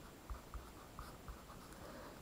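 Handwriting on lined paper: faint, short scratching strokes as a mathematical expression is written out, stopping near the end.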